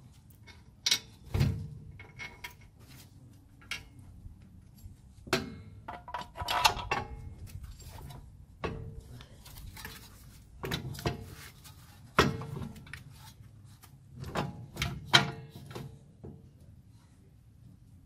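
Irregular metal clunks and clinks as a new lower ball joint is handled and lined up in the steering knuckle, some knocks followed by brief metallic ringing. The loudest knocks come about two-thirds of the way through.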